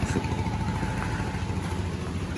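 An engine idling with a steady low rumble.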